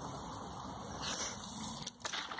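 Fizzy lemonade spraying in a thin jet from a screw hole punched in a plastic bottle, a steady hiss with a slight rise about a second in.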